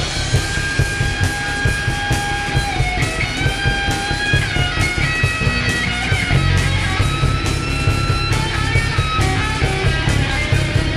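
Live metal band playing an instrumental passage: electric guitar lead with long held notes that slide and bend between pitches, over bass guitar and drums.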